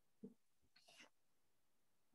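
Near silence, broken by two faint, brief sounds: a low one about a quarter second in and a higher, breathy one about a second in.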